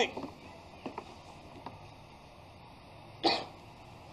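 A pause in a man's speech: faint room tone with a couple of soft clicks, and one short noisy burst about three seconds in.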